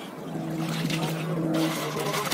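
An engine running steadily, a low even hum that comes up clearly about half a second in.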